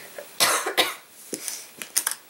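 A person coughing twice in quick succession, followed by a few light clicks.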